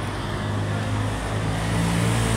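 Road traffic with a motor vehicle's engine running close by: a steady low hum that grows a little louder toward the end.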